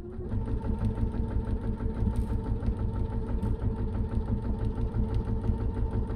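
Domestic sewing machine stitching a dart seam at a steady, rapid pace: an even clatter of needle strokes over a motor hum, coming up to speed just after the start.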